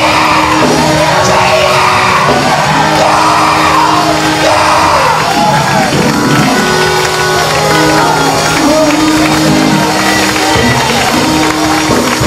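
A preacher's loud, shouted and sung delivery into a microphone over church music with long held keyboard chords, the congregation's voices mixed in. The preacher's voice fades out about halfway, leaving the held chords and the crowd.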